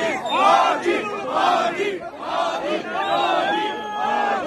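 A large crowd shouting and chanting together, many voices surging in repeated loud bursts about a second apart.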